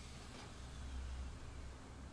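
An angle grinder with a flap disc coasting down after a quick deburring pass: a faint falling whine over a low steady hum, with a light click about half a second in.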